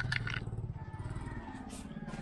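Small motorcycle engine idling with a steady, fast low pulse, and a few sharp clicks just at the start.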